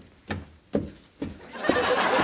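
Footsteps coming down a staircase, a soft thump about every half second, then a studio audience bursting into laughter near the end, the laughter the loudest sound.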